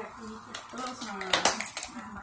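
Hard plastic clattering as the pink plastic baby item and its gift box are handled, a quick cluster of knocks near the end, over faint voices.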